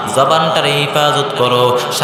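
A man's voice chanting a Bengali Islamic sermon (waz) in a sung, melodic style, holding notes that step and glide up and down.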